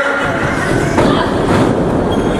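Wrestling ring rumbling and thudding under the wrestlers' footwork and moves, with the loudest bump about a second in as a wrestler goes down to the mat.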